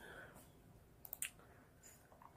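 Near silence: quiet room tone, with a few faint clicks about a second in.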